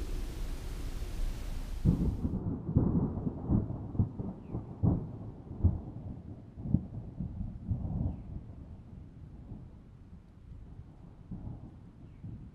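A deep, rolling rumble of thunder, with a string of irregular cracks between about two and eight seconds in, dying away towards the end.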